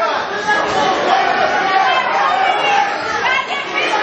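Crowd of ringside spectators chattering and calling out at once, many voices overlapping, during a boxing bout in a large hall.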